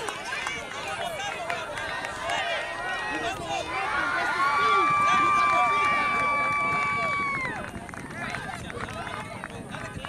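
Outdoor sideline shouting from spectators and players at a youth soccer match, with one long, steady, high-pitched call held for about three seconds near the middle.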